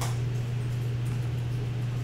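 Room tone: a steady low hum with faint hiss, and a brief click at the very start.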